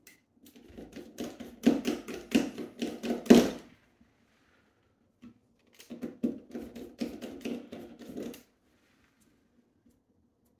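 Screwdriver turning out the shell screws of an airsoft AEG gearbox, a run of rapid clicking heard twice, the second starting about six seconds in.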